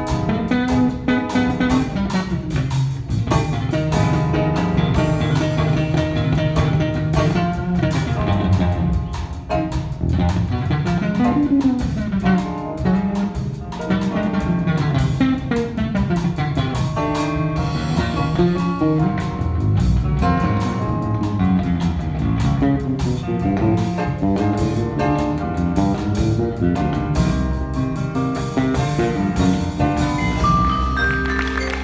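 Jazz band playing live: a guitar solo over a bass line that steps up and down and a drum kit keeping time.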